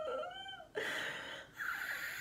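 A young woman's high, wavering whine of nervousness, followed by two breathy, hissing bursts of voice, the second near the end.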